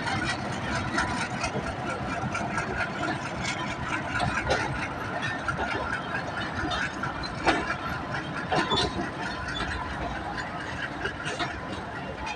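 Pakistan Railways passenger coaches rolling past on the track, a steady rumble broken by a few sharp clacks of wheels over rail joints.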